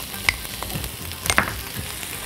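Minced beef frying in a pan with a steady, quiet sizzle. Two light clicks sound about a third of a second and a second and a half in.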